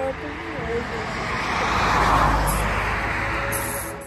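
A vehicle passing by: its noise swells to a peak about halfway through, then fades.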